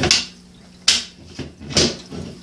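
Three sharp clicks and taps of Meccano construction-kit parts being handled and turned over on a table, the first being the loudest.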